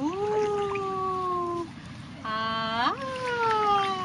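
Wordless drawn-out voice sounds, cooing rather than speech. There is one long held note that drifts slightly down in pitch. After a short pause comes a lower note that sweeps sharply up into a second long, falling note.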